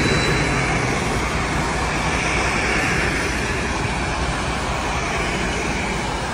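Steady rushing noise of wind and choppy sea water, with no speech.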